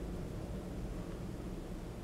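Quiet steady background hum of room tone with a faint hiss, with no distinct sound standing out.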